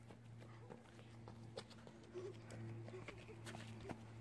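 Faint, steady low hum with scattered light clicks and taps; no clear event stands out.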